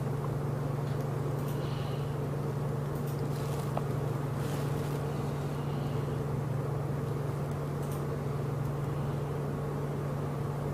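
A steady low hum that stays even throughout.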